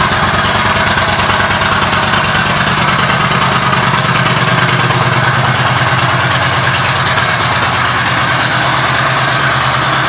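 Yamaha V Star 1300's V-twin engine idling steadily through a Cobra aftermarket exhaust, with an even low pulse.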